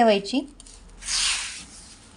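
A handful of river sand set down and rubbed onto a wooden plank: a short gritty hiss about a second in, then a faint rustle.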